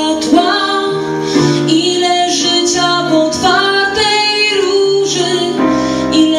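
A woman singing a slow melody with held, gliding notes over her own piano accompaniment.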